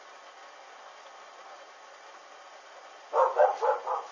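A dog barking four times in quick succession near the end, over a steady faint hiss.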